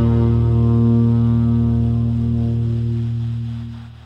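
The closing long held low note of a tenor saxophone, with a sustained low chord beneath it, fading out in the last second as the piece ends.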